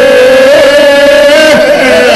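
A man singing one long held note in Bosnian izvorna folk style, the pitch wavering slightly, with violin accompaniment.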